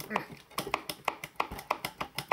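Irregular sharp metal clicks and knocks, about five a second, as a power supply module is wiggled loose in its metal chassis.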